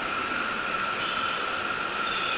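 A train standing at the platform: a steady hum with one held high tone over an even hiss, typical of a stopped train's onboard equipment running.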